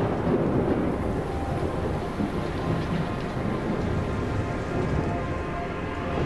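Thunderstorm: a continuous low rumble of thunder over heavy rain.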